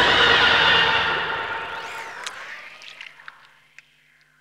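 The close of a psychedelic trance track: a noisy electronic synth wash with a swooping pitch glide and a few scattered clicks, fading out to near silence.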